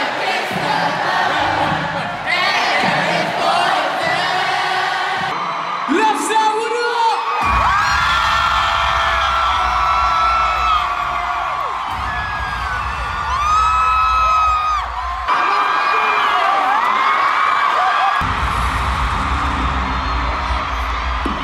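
Arena concert crowd cheering and singing along, then heavy bass-driven rap music through the arena sound system from about seven seconds in. The bass drops out briefly twice.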